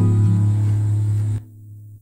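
Strummed acoustic guitar chord ringing out, picked up by a Behringer SB 78A condenser microphone. The ring cuts off suddenly about one and a half seconds in.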